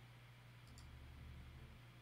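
Near silence: a low steady hum, with two faint computer mouse clicks a little under a second in.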